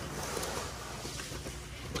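A hand scrubbing a foam-covered polished aluminium truck wheel: a soft, steady rubbing hiss.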